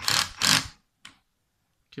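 Black & Decker drill-driver tightening a screw in a drill housing, its clutch ratcheting in two short bursts as the set torque is reached, followed by a single faint click.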